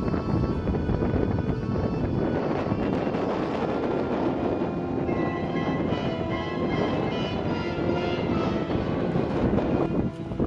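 Background music over a steady rush of wind buffeting the microphone.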